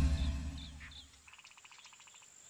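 A deep boom fading away over the first second, then a quiet rural background with rapid trilled chirps from small wildlife.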